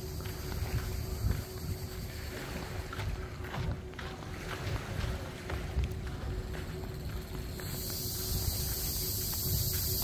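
Outdoor ambience while walking on a sandy path: a low wind rumble on the microphone and faint, irregular footsteps, with a high insect shrill coming in near the end.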